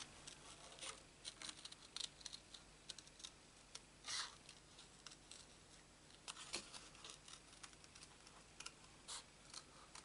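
Small scissors snipping through card stock in short, irregular cuts around a stamped flower, faint throughout.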